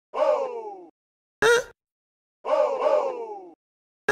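Spooky beat intro built from processed vocal samples: a short, sharp vocal stab, then falling, drawn-out moaning voices, looping about every two and a half seconds with silent gaps between.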